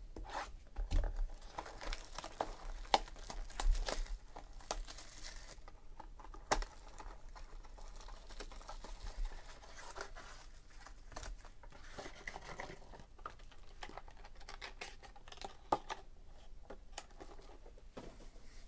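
A cardboard trading-card hobby box being torn open and its foil-wrapped packs handled: tearing cardboard, rustling and crinkling foil, busiest in the first few seconds, then lighter handling.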